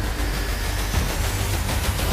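Intro-animation whoosh sound effect: a loud, steady rushing noise over a deep rumble. The theme music falls away under it and comes back at the end.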